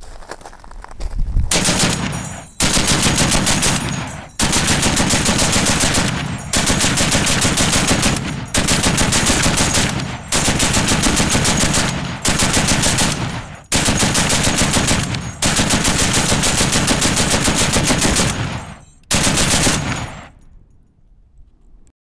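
U.S. Ordnance M2HB-QCB .50 BMG heavy machine gun firing full-auto in about ten long bursts with only brief pauses between them, each burst a steady rhythm of loud shots. The firing stops about twenty seconds in.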